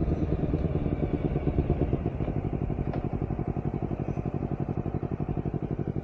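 Honda CBR250RR motorcycle engine at low revs as the bike slows, its exhaust note settling into an even, rapid pulse.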